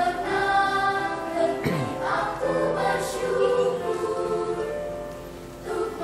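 Children's choir singing in several parts with sustained notes. The voices drop to a softer passage about five seconds in, then come back loud just before the end.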